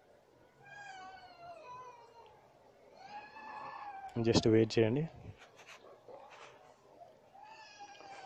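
Two faint, drawn-out high-pitched cries: the first wavers and falls over about a second and a half, the second is shorter and arches. A short, loud burst of a man's speech comes in just after the second.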